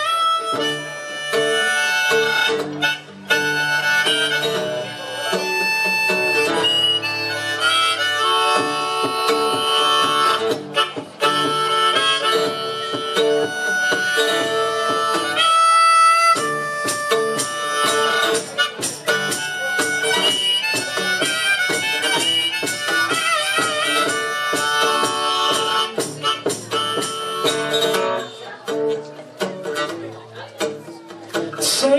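Live acoustic music: a harmonica plays a melody of held notes, some of them wavering and bending, over acoustic guitar.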